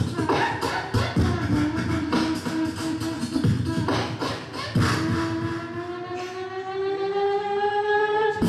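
Two beatboxers performing an Arabian-style freestyle together: vocal kick and snare hits under a pitched vocal melody, then from about five seconds in one long held note that slowly rises in pitch.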